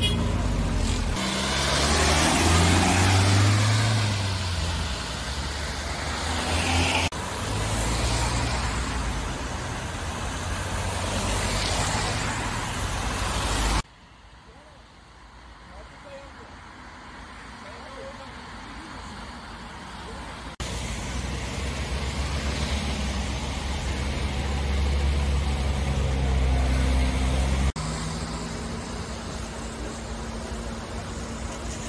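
Street traffic and vehicle engines running on a wet road, with background voices. The sound changes abruptly several times, with a much quieter stretch a little before the middle.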